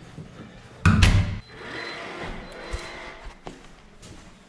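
An apartment door pulled shut with a loud thud about a second in, followed by quieter handling noise.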